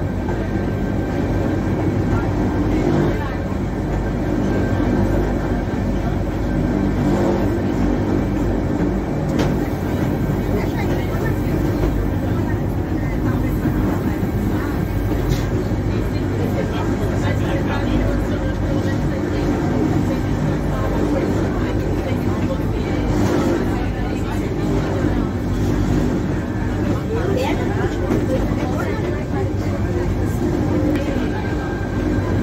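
Electric cog train of the Corcovado rack railway climbing, heard from inside the car: a steady hum of motor and running gear that holds at an even level throughout.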